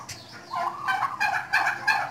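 A flock of domestic turkeys gobbling: after a brief lull, a rapid, rattling run of gobbles starts about half a second in and grows louder toward the end.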